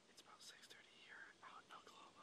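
Faint whispered speech, a man talking under his breath in short broken phrases.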